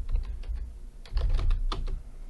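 Computer keyboard typing: a run of separate keystrokes, several in quick succession in the second half.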